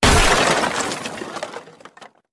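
Shatter sound effect: a sudden loud smash at the start, followed by scattering, breaking debris that fades away over nearly two seconds.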